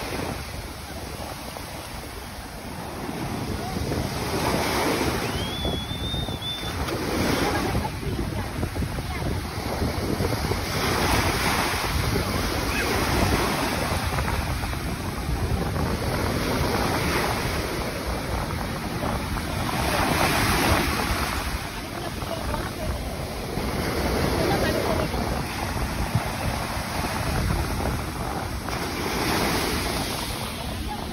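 Sea waves breaking over rocks and washing up a sandy shore, the surf surging and easing every few seconds, with wind buffeting the microphone. A short high whistle sounds about six seconds in.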